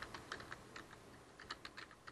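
Faint typing on a computer keyboard: irregular single key clicks, with a short pause about a second in.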